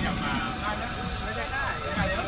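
Indistinct voices of a crowd talking, with a faint thin whine that rises slowly in pitch.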